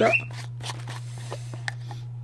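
Light crinkling of clear plastic wrapping and a few faint clicks of plastic as a small plastic pump-dispenser bottle is handled, over a steady low hum.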